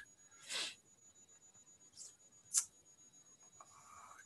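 Quiet room tone through a laptop microphone, with a faint steady high-pitched tone throughout. A short breath-like hiss comes about half a second in, and two brief ticks come about two and two and a half seconds in.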